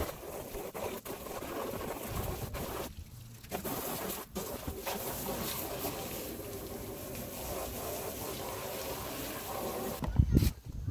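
Garden hose spray wand jetting water onto a plastic kayak hull to rinse off cleaner, a steady hiss and splatter that cuts out briefly about three seconds in and again a second later.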